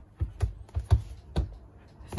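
Fingers tapping and gripping a rigid cardboard iPad Air box as it is turned over on a desk. Five or so light, sharp taps and knocks come at an uneven pace.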